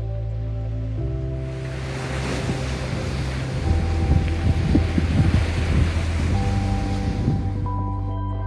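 Surf breaking on a pebble beach, with wind gusting on the microphone. The sound swells in after about a second and a half and fades out near the end, over soft background music with long held notes.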